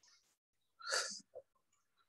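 One short, sharp burst of breath noise from a man about a second in, like a sniff or stifled sneeze.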